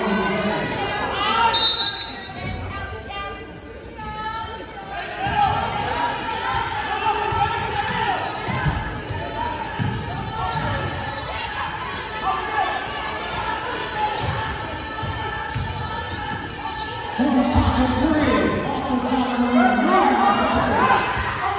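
Basketball dribbled on a hardwood gym floor during a game, a run of short thuds through the middle stretch, in a large echoing gym. Voices of spectators and coaches run under it and get louder near the end.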